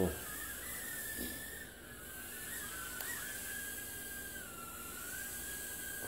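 JJRC H36 mini quadcopter's four tiny coreless motors and propellers whining in flight. The pitch wavers up and down with the throttle, sinking lower for a second or so in the middle before rising back.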